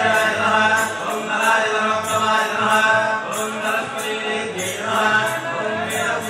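Melodic Hindu mantra chanting, sung in repeating phrases about a second long over a steady low tone.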